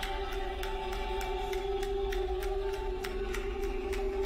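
Eerie horror-film score: a single sustained, droning chord held steady, with faint scattered clicks.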